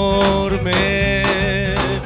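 Live rock band playing: drums keeping a steady beat about twice a second under electric guitar and bass, with a long held note wavering slowly above.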